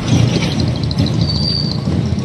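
Street noise of road traffic, with engine rumble that includes a motorcycle going past close by. A short high tone sounds about one and a half seconds in.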